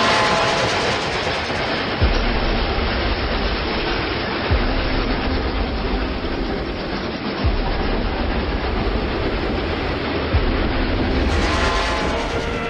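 Film sound effects of a steam train running hard along the rails: a dense, steady clatter and rumble with a heavy low thud about every two and a half to three seconds. Faint music can be heard near the start and the end.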